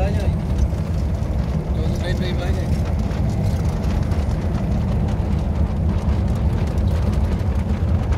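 A steady, loud low rumble of wind buffeting the microphone, with road and engine noise from a vehicle moving along a road.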